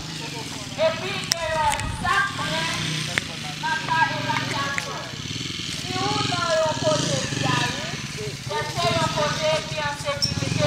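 People talking, their words indistinct, with a few light clicks.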